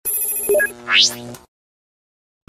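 Short electronic logo sting: bright, steady chime-like tones with a couple of quick blips, then a fast rising whoosh about a second in, fading out by a second and a half.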